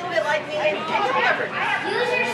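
Speech: people talking, with no other distinct sound.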